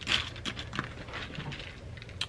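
A spoon stirring and scooping cereal in a bowl: a run of light, irregular clicks and rustles.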